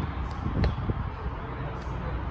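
Low, steady rumbling background noise, like wind or handling on a phone microphone, with a couple of faint clicks in the first second.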